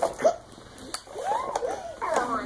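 Young child's soft, wordless babbling, with a small click about a second in.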